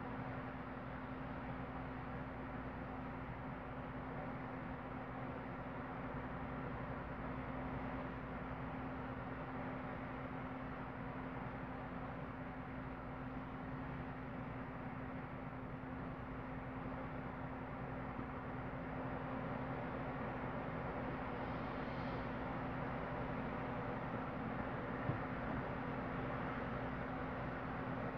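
A steady background hum: one constant low tone over an even hiss, unchanging throughout.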